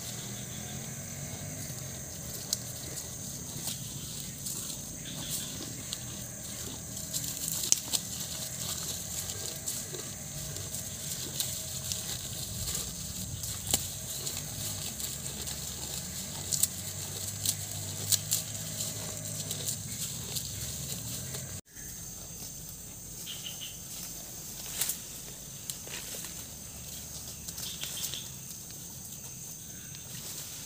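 A young bull grazing, cropping and chewing leafy grass with irregular ripping and crunching sounds, over a steady high insect drone.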